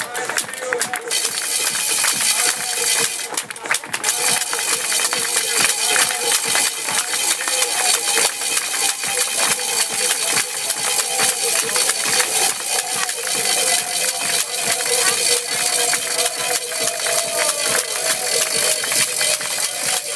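Busy race-course din: music and a voice over loudspeakers, under a dense, steady clatter, with a few held tones, one sliding slowly down.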